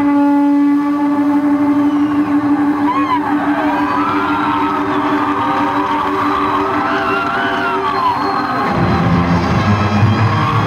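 Electric blues guitar played almost alone: one long sustained note with bent, wavering notes gliding above it. Bass and drums come back in near the end.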